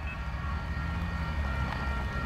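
CN diesel locomotive leading a loaded coal train, its engine giving a steady low rumble as it approaches.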